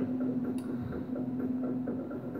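A steady low hum with faint ticking under it.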